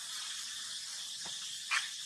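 A baby macaque gives one short squeak that falls in pitch near the end, over a steady high hiss.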